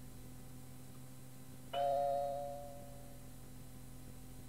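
Cueing chime on a cassette tape, sounding once about two seconds in and fading over about a second and a half. It signals that the next outgoing message starts in three seconds.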